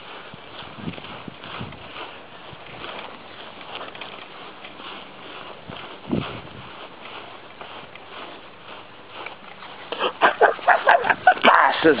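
A small dog's claws ticking and scuffling faintly and irregularly on a hard floor as she moves about, with one louder thump about six seconds in. A person's voice comes in loudly near the end.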